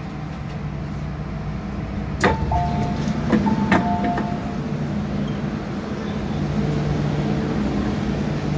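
MTR M-Train sliding passenger doors opening at a station stop, over the steady hum of the stopped train. A sharp clunk comes about two seconds in, then a short two-tone beep; then two more clunks and a second short two-tone beep.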